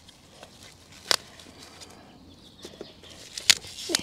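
Quiet background broken by two sharp clicks, one about a second in and one past three seconds, with a few fainter ticks between.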